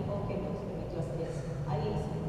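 A woman speaking Spanish in a lecture.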